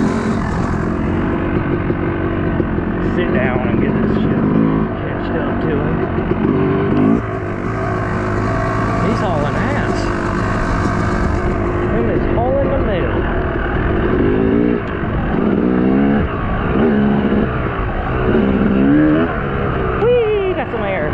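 Yamaha YZ250 two-stroke dirt bike engine under riding load, its revs climbing and dropping again and again, with several quick rising revs in the last few seconds. Wind rushes on the microphone for a few seconds in the middle.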